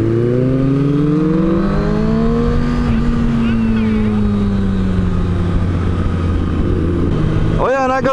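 Sport motorcycle engine accelerating, its pitch rising for about two and a half seconds, then easing off with the pitch slowly falling, heard over a steady lower drone.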